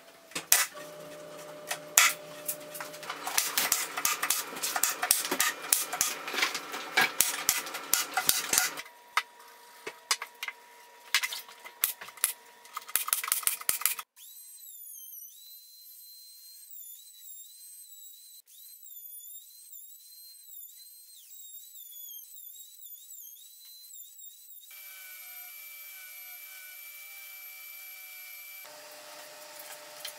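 Pneumatic brad nailer work on MDF: many sharp clicks and knocks over a low hum for about the first half. After a sudden cut comes a palm router's high whine, wavering in pitch as it cuts along the edge of an MDF board.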